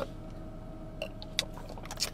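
A few faint gulps and small mouth clicks as someone drinks bottled green tea, over a steady low hum in a car cabin.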